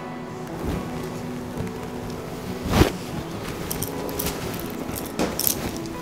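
Faint background music, with brief rustles of silk saree fabric being handled and one sharp click about halfway through.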